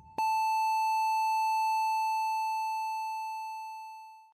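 Heart-monitor flatline sound effect closing the recorded track: after a last short beep, one long steady beep begins a moment in and slowly fades. It is the sign of a heart that has stopped.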